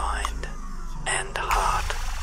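Whispering voice in a dance performance's soundtrack, over a steady low drone, with a sharp breathy hiss about a second in.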